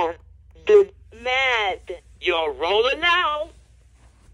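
LeapFrog Think & Go Phonics toy's recorded voice speaking through its small speaker in several short phrases, ending about half a second before the end.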